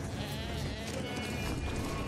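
Goats bleating as the herd scatters, several calls wavering in pitch, over background film music.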